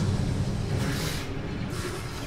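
A low, steady rumble from an animated battle scene's soundtrack.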